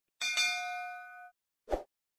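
A notification-bell sound effect: a single bright ding rings with several clear tones for about a second, fading, then cuts off abruptly. A short, soft pop follows near the end.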